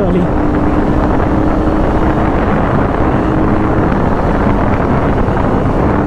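KTM Duke 250's single-cylinder engine running at steady cruising revs while riding, buried under heavy wind rush on the microphone and road noise.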